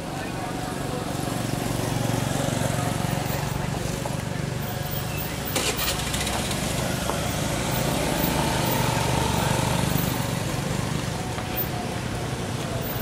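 A motor engine running steadily, swelling over the first couple of seconds and then holding, with indistinct voices in the background and a brief click near the middle.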